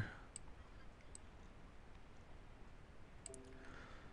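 Faint computer mouse clicks over quiet room tone: a few scattered clicks, one about half a second in, another just after a second, and a quick double click a little past three seconds.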